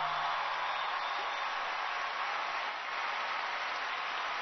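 Large arena audience applauding steadily, as the low held chord of the music's last note dies away about half a second in.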